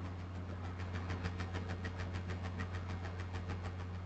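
Quiet steady low hum with a faint, rapid, evenly spaced ticking running through it: background room noise with no speech.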